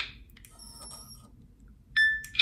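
Hitachi Vulcan handheld LIBS analyzer testing a metal sample: faint clicking and thin high tones while it measures, then a short, loud electronic beep near the end.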